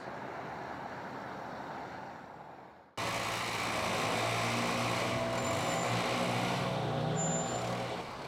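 Steady roadside traffic noise that fades out about three seconds in. After a cut, a heavy engine runs steadily, loudly, under a strong rush of compressed air blasting water and grit out of a pothole.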